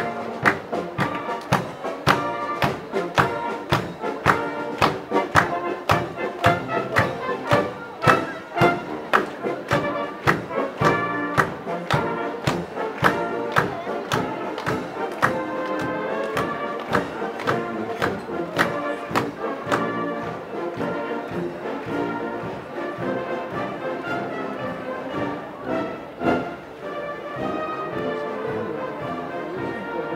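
Marching brass band playing in the street. A drum beats about twice a second, and the beat thins out after about twenty seconds.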